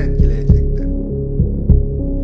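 Dark background music: a sustained low drone with paired bass thumps, like a heartbeat, repeating a little more than once a second.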